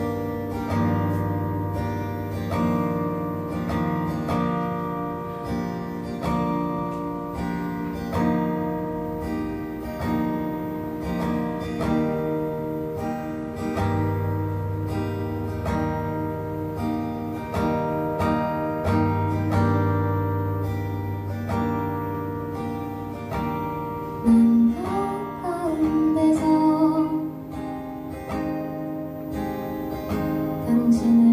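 Acoustic guitar strummed in a steady rhythm, playing held chords as an instrumental passage. About 24 seconds in, a woman's singing voice comes in over the guitar and the sound gets louder.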